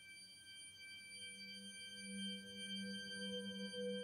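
Faint outro music of sustained, ringing bell-like tones, with a lower tone swelling about a second and a half in and wavering.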